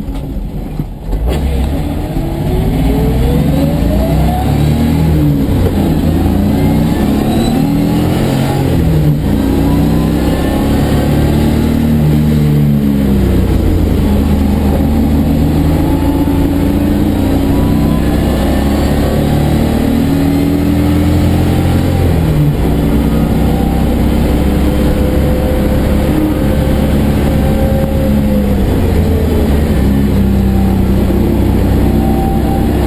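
1989 BMW 325i's M20B25 inline-six, with a Spec E30 exhaust and aftermarket muffler, heard from inside the gutted cabin accelerating hard onto the track. The revs climb in long pulls, broken by gear changes a few times.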